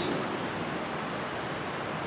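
Steady, even hiss of room tone, with no other sound standing out.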